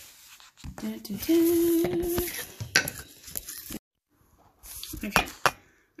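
Handling noise from a phone being moved and propped up on a kitchen counter: rubbing and scraping with a steady hum-like tone for about a second, then several sharp knocks as it is set in place, with a brief dropout of all sound in between.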